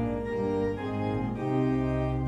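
Organ playing a hymn tune, sustained chords that change every second or so.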